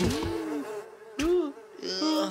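Nasal, buzzing cartoon-character voice sounds: short pitched hums and grunts that bend up and down in pitch, with a brief high squeak near the end.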